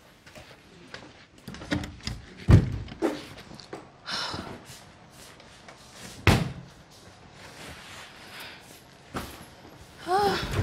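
A series of separate thuds and knocks, like doors and objects being banged, with two loud ones, one about two and a half seconds in and another a little after six seconds.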